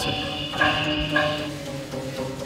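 Wires stretched across a wooden frame ringing with sustained pitched tones. Fresh notes sound about half a second in and again just after a second.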